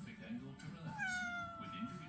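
Ginger domestic cat meowing once: one drawn-out meow of about a second that falls slightly in pitch, in answer to being spoken to.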